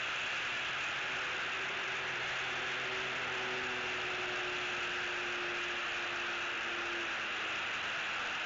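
Steady hiss with the faint hum of a vehicle passing on the road below; its low tone drifts slightly down from about a second in and fades out near seven seconds.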